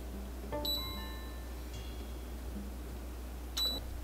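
Induction cooktop's touch-control panel beeping twice as it is switched on: short, high beeps about half a second in and again near the end.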